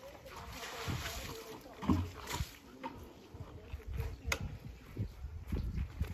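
Water sloshing and splashing from a bucket tipped onto a concrete floor slab, with a dull knock about two seconds in and a sharp click a little past four seconds.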